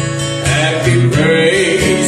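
Acoustic guitar strummed in a steady rhythm, with a man singing over it from about half a second in.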